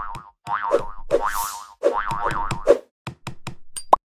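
Cartoon sound effects for an animated logo: a series of springy boings, then a quick run of sharp knocks in the last second, ending on a short bright note.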